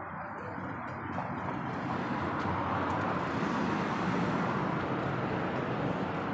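Road traffic: a car passing close by on the street, its tyre and engine noise swelling to a peak about three to four seconds in and then easing off.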